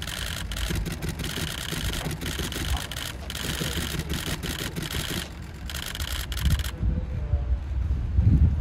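Camera shutters firing in rapid bursts, a dense clicking hiss that cuts off suddenly near the end, over a steady low rumble of idling engines.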